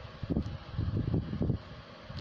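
Wind buffeting the microphone: a low rumble that comes and goes in uneven gusts.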